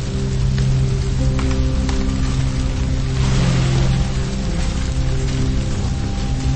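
Slow background music of sustained low chords, with a steady rain-like hiss under it that swells briefly about halfway through.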